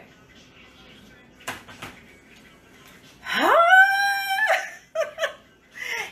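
A woman's voice sliding up into a long, high held note, like a sung whoop, about three seconds in, followed by a few short vocal sounds and then laughter near the end. A single sharp knock about one and a half seconds in.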